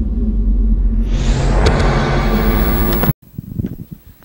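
Sound design for an animated logo intro: a deep rumble over steady low tones, joined about a second in by a whoosh. It all cuts off abruptly about three seconds in, leaving faint room noise.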